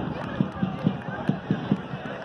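A steady run of short low thumps, about four to five a second, under shouting voices.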